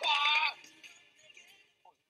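A loud, high-pitched vocal cry lasting about half a second, then fading to quiet under faint music.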